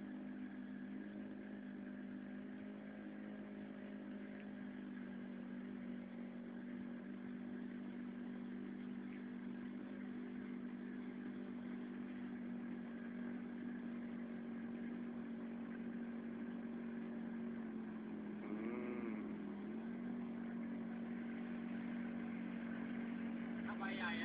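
Motorcycle engine running at a steady speed, a constant hum that slowly grows louder. Its pitch dips briefly a little past the middle, when a short rising-and-falling tone passes over it.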